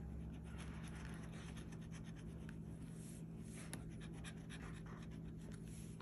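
A flat metal scratcher tool scraping the coating off a lottery scratch-off ticket in many quick, faint strokes.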